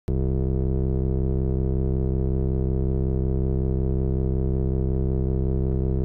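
Steady electronic music drone: a low sustained tone with many overtones that starts abruptly and holds without change.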